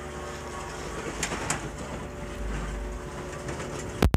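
Steady background hum and room noise with a couple of faint clicks about a second in.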